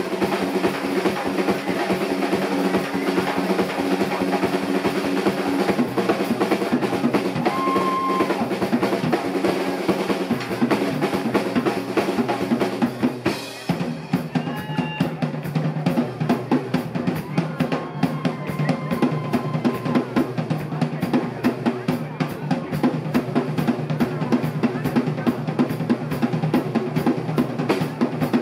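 A live rock band playing, the drum kit loudest with a steady, fast run of kick and snare strokes over sustained bass and guitar tones. The sound dips briefly about halfway through, then the drumming carries on.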